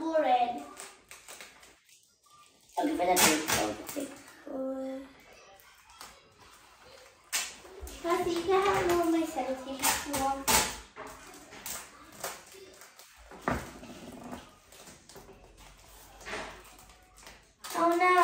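Children talking in snatches, with intermittent crinkling and rustling of plastic bags being squeezed and handled as squishy-toy stuffing.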